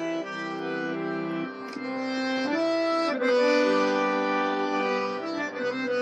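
Harmonium playing an instrumental passage without voice: steady held reed notes over a sustained lower chord, the melody moving from note to note every second or so.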